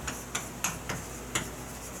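Chalk tapping and scratching on a chalkboard as characters are written: a string of sharp, irregular ticks, about three a second.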